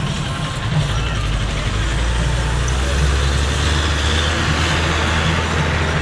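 A large road vehicle's engine, likely the bus in view, running close by as a steady low drone that grows louder about a second in. A hiss of higher noise swells and fades in the middle.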